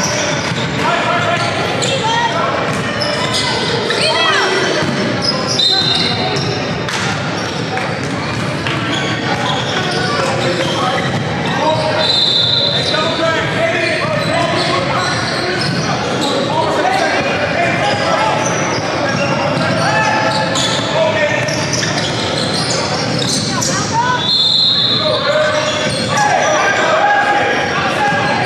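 Live sound of an indoor basketball game: a ball bouncing on the hardwood court among the chatter and calls of players and spectators, echoing in a large gym. A few short high-pitched squeaks stand out, about five seconds in, near the middle and near the end.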